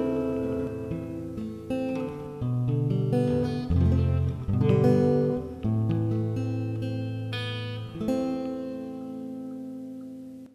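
Acoustic guitar playing an instrumental passage of picked notes and strummed chords, ending on a last chord struck about eight seconds in that rings and slowly dies away.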